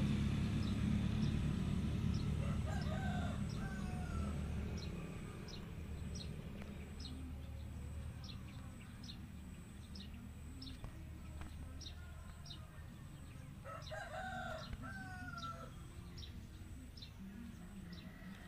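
A rooster crowing twice, once about three seconds in and again about fourteen seconds in. A faint high ticking repeats about twice a second behind it, and a low rumble fades out over the first few seconds.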